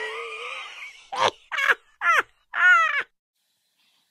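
Sound effect under an animated transition: a noisy, pitched swell that fades over the first second, then four short separate calls, each bending in pitch, about half a second apart.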